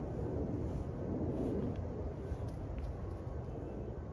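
Steady low rumbling background noise outdoors, with no distinct events.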